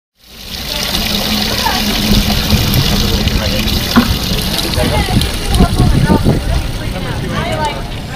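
Garden hose spray nozzles running water into plastic buckets, a steady rush, under the chatter of several people's voices.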